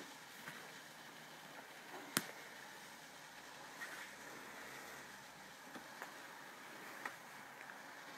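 Faint handling of a cloth hand puppet, soft fabric rustling, with one sharp click about two seconds in and a few softer ticks.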